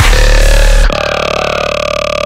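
Dubstep track: heavy bass with a held tone, then about a second in the bass drops out and a single held, buzzing synth note carries on alone, a little quieter.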